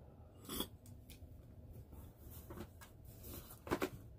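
Faint handling noises from a box cutter and a cardboard box: a few scattered clicks and rustles, one about half a second in and two sharper clicks near the end.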